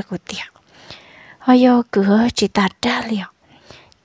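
Speech only: a voice telling a story in Hmong, whispered for about the first second and then spoken aloud.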